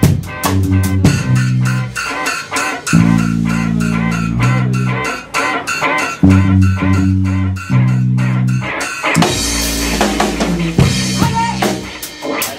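Live band playing an improvised instrumental passage: a drum kit keeps the beat under long held bass-guitar notes and guitar.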